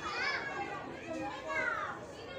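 Children's voices calling and shouting in play, high-pitched calls that swoop up and down, with a long falling call near the end.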